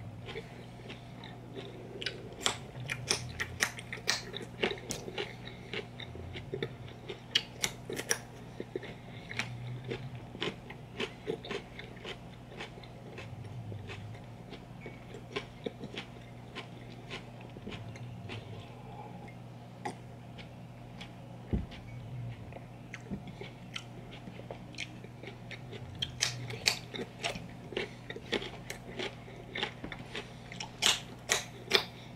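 Close-miked crunching and chewing of raw baby carrots dipped in hummus: crisp crunches come in quick runs, thin out in the middle, then pick up again near the end.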